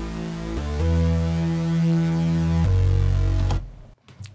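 Crunchy, distorted synth bass from the Arturia Analog Lab 4 software instrument playing sustained low notes, dry with its AutoFilter bypassed. It changes note about half a second in and again past the midpoint, then cuts off shortly before the end.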